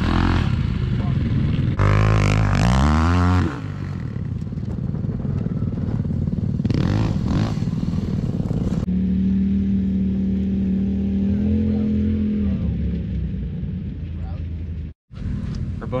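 Motor vehicle engines revving and running across several short clips joined by abrupt cuts. The pitch rises and falls, then settles to a steadier drone for a few seconds in the middle, and there is a brief dropout to silence near the end.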